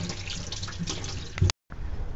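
Kitchen tap running into a stainless-steel sink, water splashing over hands rinsing squid. The water sound cuts off abruptly about three-quarters of the way through.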